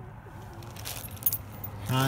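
Plastic bag and cellophane flower wrapping crinkling and rustling as the food bag and bouquet of roses are picked up, a run of irregular crackles starting about half a second in. A voice begins right at the end.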